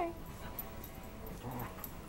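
Dogs at play, one giving soft, faint whines that come and go.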